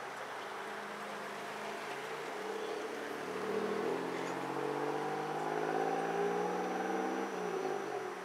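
A motor vehicle's engine accelerating, its pitch rising steadily and growing louder over several seconds, then dropping and fading near the end as it passes.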